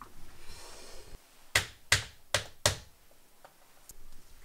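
A fretwork panel being fitted against the side of a staircase by hand: a brief scrape, then four sharp knocks in quick succession as it is pushed and tapped into place, with a faint click near the end.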